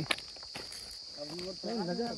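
Steady, high-pitched insect chorus in the open field, with a person talking in the second half.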